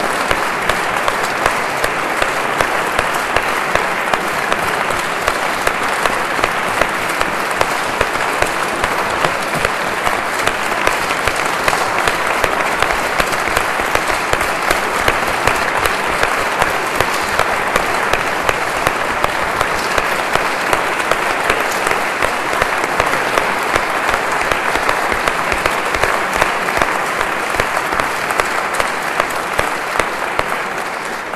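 Audience applauding: many hands clapping in a dense, steady sound that holds throughout.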